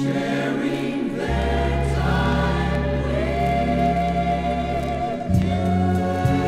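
A choir sings held notes that step upward in pitch, over orchestral backing with a long sustained bass note. This is the sung passage of the song, played from a 45 rpm vinyl single.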